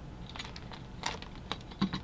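A handful of sharp, scattered clicks and taps of metal parts as a small homemade camera mount, a metal slide bar that swivels on a bolt with a pipe clamp, is handled and moved.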